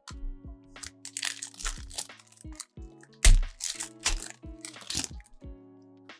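Stiff trading cards being handled and flicked through by hand: a run of short crackles and clicks, with one louder thump a little past the middle, over quiet background music.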